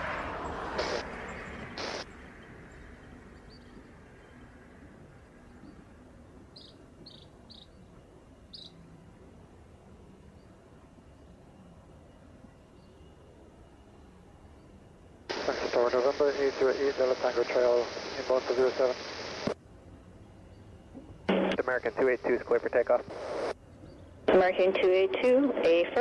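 Air traffic control radio transmissions: clipped, band-limited voices come in about fifteen seconds in and again twice near the end, after a long stretch of faint background hiss.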